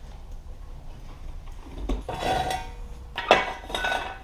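Steel motorcycle stands being handled: a rattling metal clank about two seconds in, then a sharper ringing clank a little past three seconds, as the rear paddock lift is worked and a steel jack stand is pulled out.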